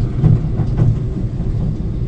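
Steady low rumble of a moving vehicle driving along a country road.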